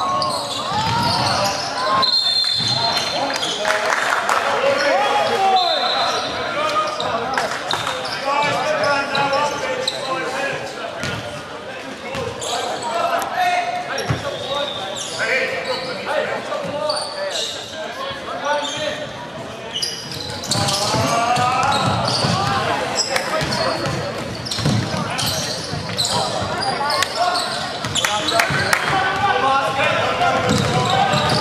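Echoing gym sounds of a basketball game: indistinct voices calling out on and around the court, with a basketball bouncing on the hardwood floor.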